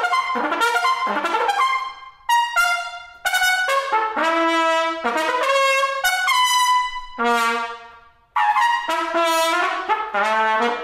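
Solo trumpet playing a passage of quick, tongued phrases broken by short pauses, with a few longer held notes.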